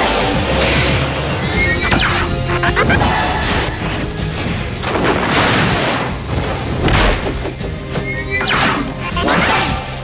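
Dramatic action music under a dense run of cartoon slug-blaster shots, crashes and impacts, with short gliding squeals about two seconds in and again near the end.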